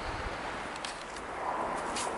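Quiet outdoor background: a steady faint hiss with a few soft small clicks.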